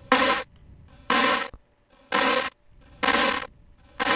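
A short pitched sample played on a loop about once a second, five hits, each coming out as a grainy, scattered tone through Ableton Live's Grain Delay with its spray raised.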